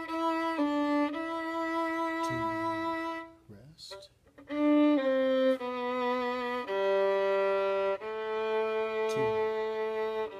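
A solo violin playing a slow, unhurried melody in held bowed notes, one after another with clean changes of pitch. A little over three seconds in there is a short break before the notes continue.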